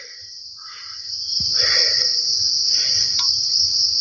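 A steady, high-pitched insect chorus that swells louder about a second in.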